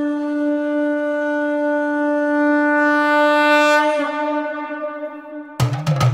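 A conch shell blown in one long, steady note that wavers and fades about five seconds in; drums break in just before the end.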